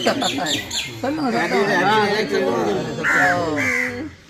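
People talking in a group, with a bird calling in the background, twice near the end.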